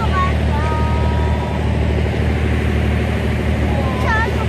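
Boat engine running steadily at idle, a low, even rumble.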